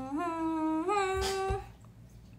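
A woman humming a held "mmm" that steps up in pitch twice and stops about one and a half seconds in.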